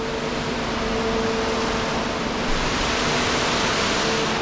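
Steady hum of a car ferry's machinery and ventilation on its car deck, two low even tones under a strong even hiss that grows slightly louder toward the end.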